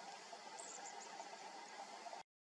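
Faint, steady outdoor field ambience: a hiss with a low, even drone. A quick run of four or five faint, high-pitched chirps comes about half a second in.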